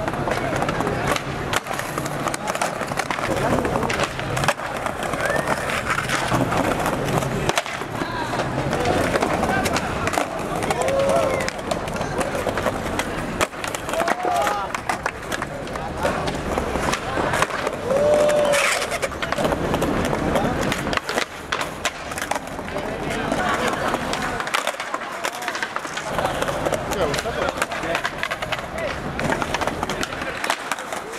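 Skateboards rolling on stone paving, with repeated sharp clacks of boards popping and landing during flatground tricks. Voices and shouts from the crowd mix in.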